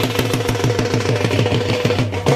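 Traditional drums playing a fast, even roll of about ten beats a second under a steady held note, as part of live band music.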